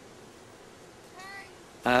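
A single brief, high-pitched animal call a little over a second in, over faint background noise.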